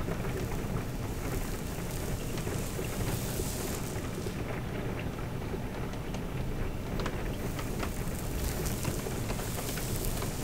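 Steady rain ambience with a low rumble underneath. A few sharp ticks come about seven seconds in and again near the end.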